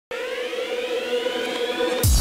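Synthesized rising sweep opening electronic intro music: several tones glide slowly upward over a steady held tone, building to the drop of a dubstep-style track at the very end.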